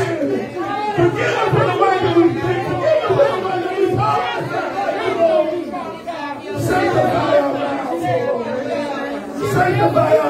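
Many voices speaking at once, with a man's voice over a microphone and sound system, in a large room.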